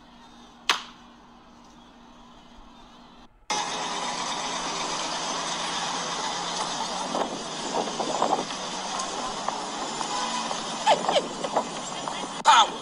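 Faint room tone with one sharp click about a second in, then an abrupt cut to loud city street noise: a steady hiss and rumble of traffic, with a laugh and scattered voices.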